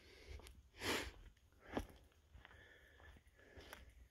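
A short sniff through the nose about a second in, then a faint click, over quiet background.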